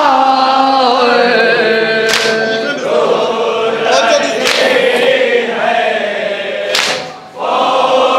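A group of men chanting a nauha, an Urdu lament, in unison. Three sharp slaps about two and a half seconds apart cut through the singing, keeping time as chest-beating (matam).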